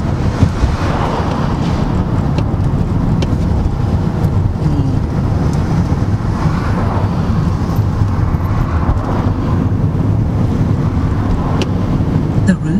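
Road and engine noise heard inside the cabin of a moving Mercedes-Benz car: a steady low rumble.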